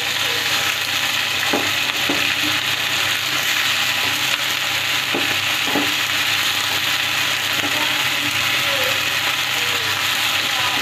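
Chopped spring onions and vegetable strips sizzling steadily in hot oil in a metal wok, with a few short scrapes of a metal spatula against the pan as they are stirred.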